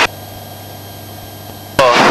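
Steady low hum on the Citabria's cockpit intercom with its voice squelch closed, the aircraft's engine coming through only faintly. Near the end the squelch opens suddenly and loud engine and wind noise through the headset microphone cuts back in.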